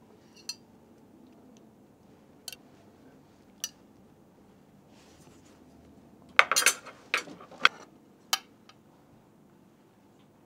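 Metal serving utensil clinking and scraping against a ceramic plate and a glass baking dish as fish fillets are lifted and laid out. A few single clinks, then a quick run of louder clinks from about six seconds in.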